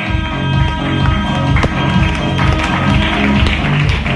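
Acoustic guitar strummed steadily and loudly, notes ringing over a repeating low beat, with sharp clicks scattered through it.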